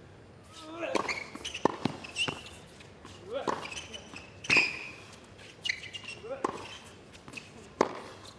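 Tennis rally on a hard court: sharp racket-on-ball strikes and ball bounces about once a second, with players grunting on some of their shots.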